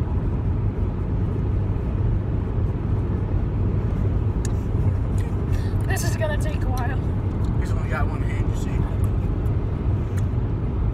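Steady low rumble of a car's engine and road noise heard from inside the cabin. Brief faint voices come in from about six to eight seconds in.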